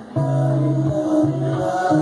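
A man singing held notes over a Telecaster-style electric guitar in a live song performance.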